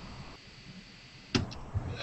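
Quiet room tone over a video call, broken about a second and a half in by one sharp click, followed by faint low knocks.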